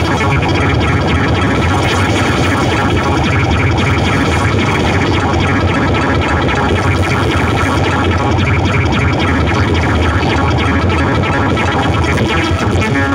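Modular synthesizer putting out a loud, steady, dense noise drone with a strong low hum underneath.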